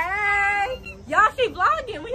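A young woman's drawn-out, high excited shout, one long held note, followed about a second later by quick excited talk or laughter.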